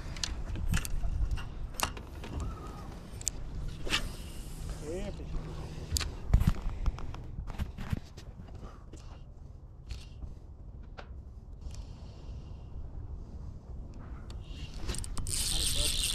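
Handling sounds of a spinning rod and reel being worked during a slow lure retrieve: scattered light clicks, knocks and scrapes over a low rumble. Near the end a loud rush of noise builds as the rod is swept up to set the hook on a fish.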